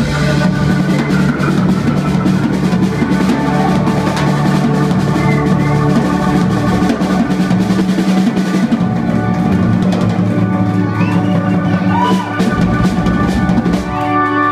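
Live rock band playing loudly: electric guitars hold chords while the drummer plays busy fills across the drum kit.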